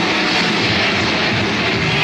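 Heavy metal band playing live on a raw tape recording: a dense, steady wash of distorted electric guitar and cymbals.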